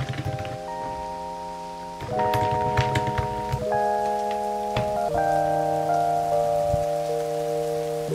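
Soft background music of held chords that change about every second and a half, with a rain sound running beneath it.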